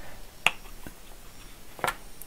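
A few small clicks of hard plastic parts being handled and pressed together as a Puck.js is pushed into a 3D-printed Duplo brick: one sharp click about half a second in, a faint one after it, and another near the end.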